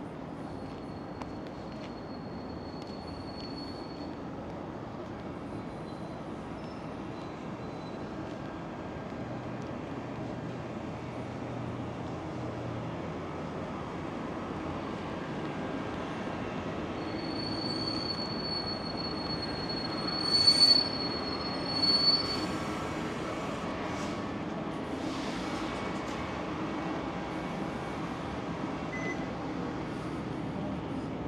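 Vehicle brakes squealing in a thin high-pitched tone over a steady street din, with two short loud bursts about two-thirds of the way through.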